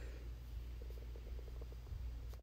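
Faint soft rustling and pressing of a hand working wet dough into flour in a steel bowl, over a low steady hum.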